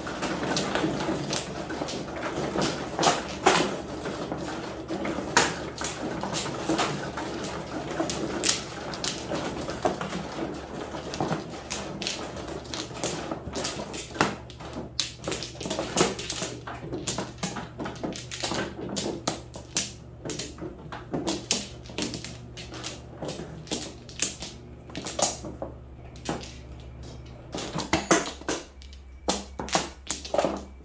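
Plastic mahjong tiles clicking and clacking as players push the walls together, draw tiles and set them into their hands: many short, irregular clicks over a low, steady hum.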